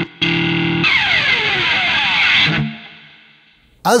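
Electric guitar through a heavy hard-clipping distortion: a short held chord, then a long falling pick scrape down the strings that stops suddenly, leaving a low note to fade out.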